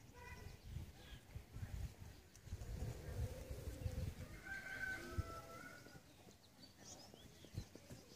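Faint calls of a farm animal: a short call at the very start and a longer, drawn-out call about halfway through. A few small high chirps come near the end, over low rumbling noise.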